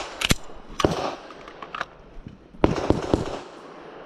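Semi-automatic pistol firing a string of shots: a quick pair just after the start, a single about a second in, and another quick pair near three seconds in, each with a short echo.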